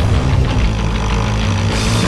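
Loud music with a heavy, driving low end; the sound grows brighter near the end.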